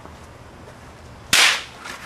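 A single sharp crack, like a hard smack or strike, about a second and a half in, dying away quickly, followed by a couple of faint clicks.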